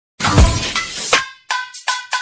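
A glass-shattering sound effect lasting about a second, followed by three quick chiming hits, as part of a music intro.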